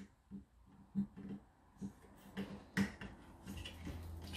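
Cordless drill gently driving a 6-32 mounting screw into a thermostat's electrical box, run in short light trigger pulses that give scattered clicks and brief whirs. The screw is deliberately not driven tight.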